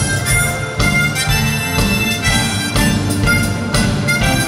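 Amplified harmonica playing a melody, backed by a live band with a steady drum beat.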